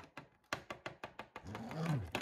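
Quick light plastic taps of a LEGO minifigure being hopped along a LEGO baseplate as footsteps, about seven a second. A low voiced sound from a person comes in near the end.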